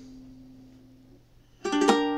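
Ukulele F chord ringing out and slowly fading. About a second and a half in, the ukulele is strummed again with a quick run of a few strokes, and the new chord rings on loudly.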